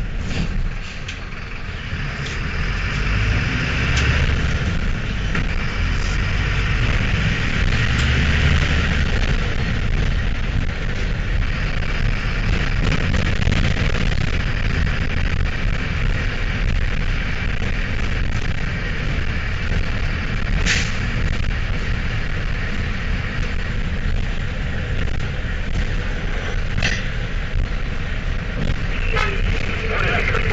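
Mercedes-Benz LO-914 minibus with its electronically injected OM904 diesel engine, heard from inside while driving, pulling harder over the first few seconds and then running on steadily. A couple of sharp knocks from the body come over the bumpy streets later on.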